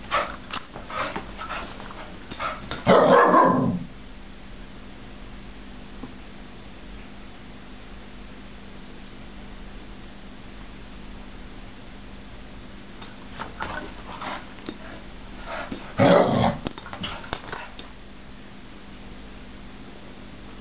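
Small dog barking and yapping in two short bouts, the loudest bark about three seconds in and another about sixteen seconds in, with quiet between.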